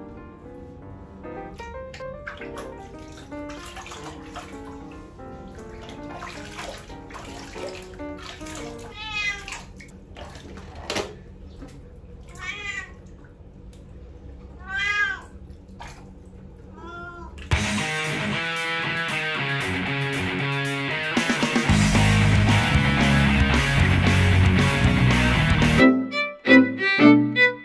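A domestic cat meowing a few times while being bathed in a basin of water, over background music. About two-thirds of the way in the music turns much louder and fills the rest.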